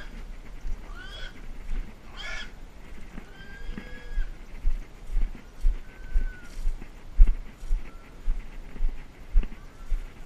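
Footsteps walking over dry leaf and bamboo litter, about two steps a second, starting about four and a half seconds in. Before that, a few short high-pitched animal calls.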